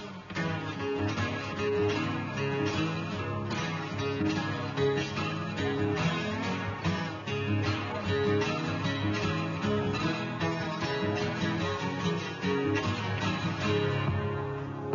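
Two steel-string acoustic guitars playing together, picking a figure that repeats about once a second over strummed chords.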